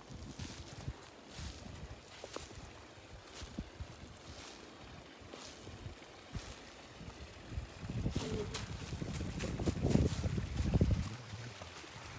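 A small brook's water running in a steady wash, with scattered light knocks and a stretch of louder low rumbling from about eight to eleven seconds in.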